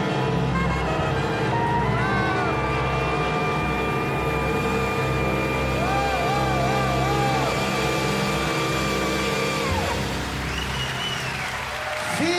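A jazz quartet of grand piano, double bass, drums and alto saxophone holds the closing chord of a ballad, with a long held note and a wordless voice wavering over it. The music breaks off about ten seconds in.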